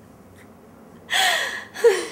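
A woman gasping for breath twice while laughing through tears: a long, breathy gasp about a second in, then a short, sharp gasp that falls in pitch near the end.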